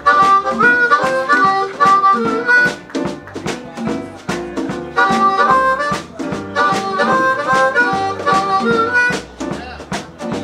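Live blues band: a harmonica played cupped to a vocal microphone carries the lead melody in short phrases, over drums, electric guitar, bass and piano.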